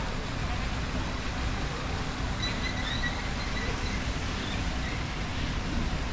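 Street ambience of road traffic: a steady hum and noise of cars. A thin, high-pitched tone comes and goes a little past halfway.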